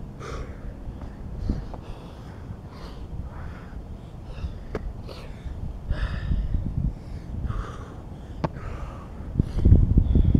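A man breathing hard and fast after burpees and jumping squats, a quick string of sniffs and puffed breaths about one to two a second: he is winded from the exercise.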